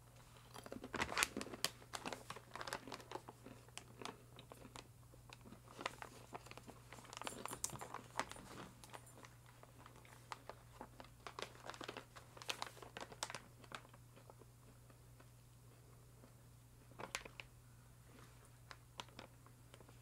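Crunchy chewing of a peanut, pumpkin-seed and blueberry nut cluster close to the microphone, in crackly bursts over the first two-thirds, then a few more crunches near the end. A steady low hum runs underneath.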